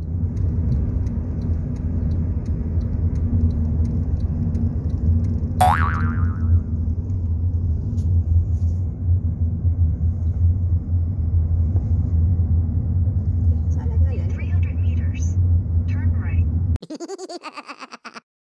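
Steady low rumble of a car's engine and tyres heard from inside the cabin while driving at road speed. About six seconds in, a springy 'boing' sound effect sweeps up and down in pitch. Near the end a few short chirpy effects sound, then the rumble cuts off suddenly.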